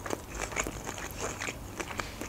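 Close-miked chewing of a mouthful of sushi: a scatter of soft, wet mouth clicks.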